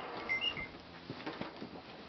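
Faint footsteps and light knocks on wooden boards and a heavy wooden door, with two brief high chirps about half a second in.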